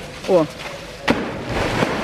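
Polar bear cub leaping into a pool: a sharp smack as it hits the water about a second in, followed by splashing.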